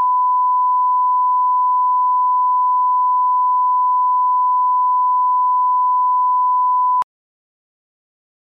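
Steady, pure single-pitch reference tone from a television programme's tape leader, played under the slate card. It holds one unchanging pitch and cuts off sharply about seven seconds in.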